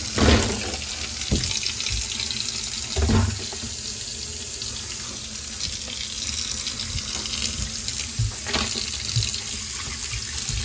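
Hot water running from a faucet into a sink onto a chunk of ice, a steady rush of splashing water. Two dull thumps stand out, one right at the start and one about three seconds in, with fainter ones near the end.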